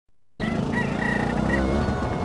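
A rooster crowing over a low steady hum, starting about half a second in.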